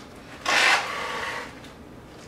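Paper rustle as a page of a paperback instruction booklet is turned and handled, one sharp rustle about half a second in that trails off quickly.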